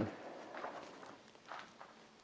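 Studded Adidas Predator Edge.1 FG football boots shifting on a yoga mat: a few faint soft scuffs and taps, the clearest about a second and a half in.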